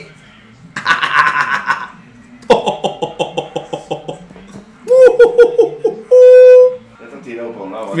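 A man laughing in several pulsing bursts, then a loud, steady held tone for about half a second near the end.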